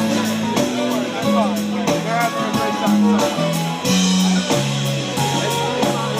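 Live band music from the audience: fiddle over acoustic and electric guitars and drums, with a low note line moving about twice a second under sliding fiddle lines.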